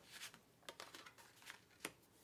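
Faint handling of a playing card on a tabletop: a few soft rustles and taps, with one small tick near the end.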